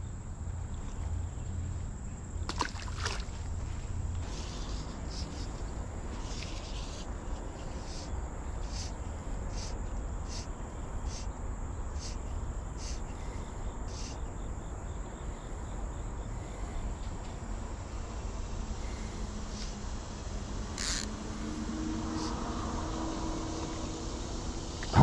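Outdoor creekside ambience: a low steady rumble with a thin, steady high insect drone, and a run of evenly spaced insect chirps, a little under one a second, through the middle. An engine hum rises in near the end.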